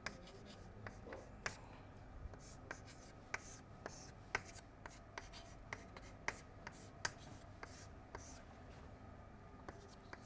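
Chalk writing on a chalkboard: a faint, irregular string of sharp taps and scratches, several a second, as the terms of an equation are written out.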